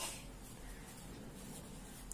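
Pen writing on a sheet of paper, a faint scratching as the letters of a word are written out.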